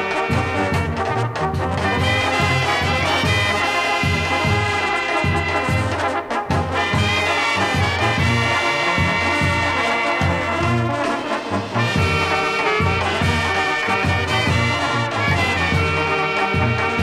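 Banda sinaloense brass band music: trumpets and trombones play the melody over a steady, regularly pulsing bass beat.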